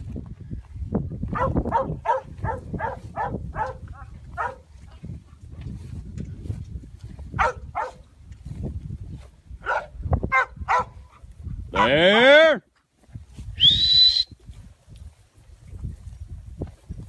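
A cow dog barking in quick short bursts, about two a second, in two runs while working a bunch of yearling cattle. Near the end comes a loud drawn-out call, then a sharp whistle that rises to a high steady note.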